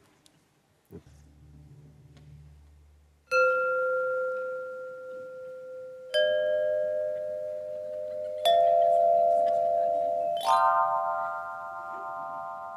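Tuned metal chime tubes of the kind used for sound healing, struck one at a time: four ringing notes about two to three seconds apart, each left ringing over the one before. The first three step up in pitch and the last is fuller. A faint low hum comes before the first note.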